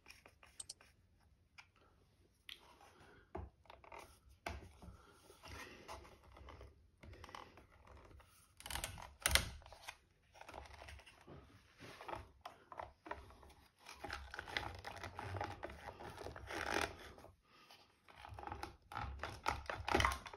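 A screwdriver working a small screw and hands handling the plastic head of a trolling motor while its rotary speed switch is taken out: faint intermittent scrapes, clicks and knocks, the louder ones about halfway and again near the end.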